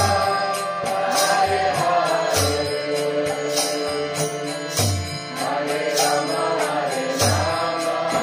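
Kirtan: voices chanting a mantra to a melody, with a deep drum beat about every second and regular hand-cymbal strikes.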